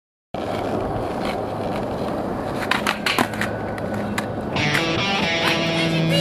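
Skateboard wheels rolling on hard pavement with a steady rumble, with a few sharp clacks of the board around the middle. Music with held notes comes in near the end.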